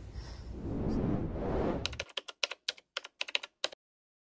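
Keyboard-typing sound effect: about a dozen quick key clicks over a second and a half, starting about two seconds in, as a web address is typed into a search-bar graphic. Before it, a steady hiss of room noise cuts off abruptly.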